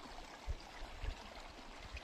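Water flowing and trickling along a narrow earthen irrigation channel, with two short low bumps about half a second and a second in.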